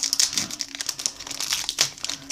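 Trading cards and their plastic pack wrapper being handled, giving irregular crinkling and rustling with small sharp ticks.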